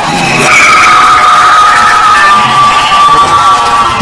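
A loud jumble of many cartoon and meme soundtracks played at once, topped from about half a second in by a long high squeal held at one pitch.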